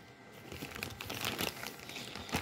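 Plastic diaper-pack wrapping crinkling and rustling as a hand lifts and handles it, in a run of irregular little crackles.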